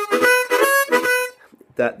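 Seydel diatonic harmonica playing a short tongue-blocked vamping shuffle phrase: rhythmic chord hits on several notes at once, stepping in pitch, stopping about a second and a half in.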